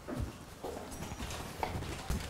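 Footsteps of a man walking on a hard floor, about two steps a second.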